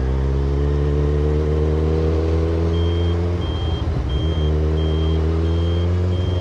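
Kawasaki Ninja 1000SX inline-four engine running under load while riding, its pitch climbing slowly, with a short break about halfway through before it carries on. From about halfway in, a high electronic beep repeats roughly every 0.7 s over the engine.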